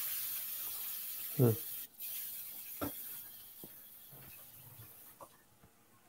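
A steady hiss, loudest in the first two seconds and fading away by about five seconds in, with a single sharp click near the middle.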